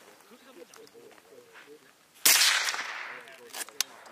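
A single rifle shot about two seconds in, its report and echo dying away over about a second, followed by a few short sharp clicks.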